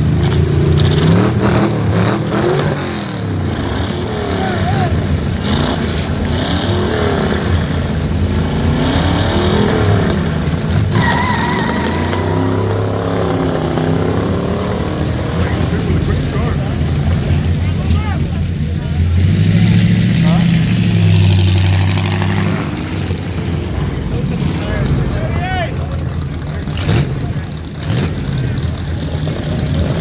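Two vintage hot rods launching off a flag start and accelerating away down the drag strip, their engines revving up in pitch again and again through the gears, with crowd voices around. Later a hot rod engine runs loud and low close by.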